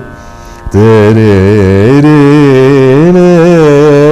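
A male Carnatic vocalist sings a phrase of raga Kalyani, holding and bending the notes with oscillating gamakas over a steady drone. The voice drops out briefly at the start, leaving only the drone, then comes back under a second in.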